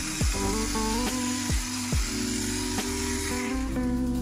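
Electric pepper grinder running, a steady grinding whir that stops shortly before the end.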